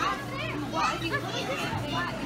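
Children's voices and background chatter in a busy hall, over a steady low hum.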